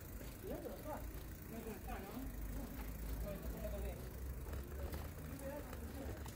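City street ambience: a steady low traffic rumble with indistinct voices in the distance.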